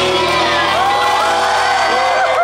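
Concert crowd cheering, with many rising and falling whoops, as the band's last chord rings out at the end of the song.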